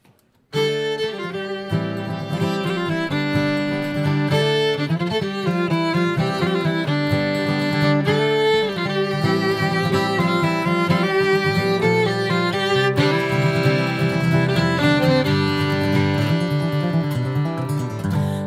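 Fiddle and acoustic guitar duet beginning an instrumental introduction about half a second in. The bowed fiddle carries the melody over the guitar accompaniment, with no singing yet.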